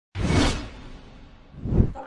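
Two whoosh transition sound effects: a swoosh just after the start that fades away, then a second, slightly louder one swelling up near the end.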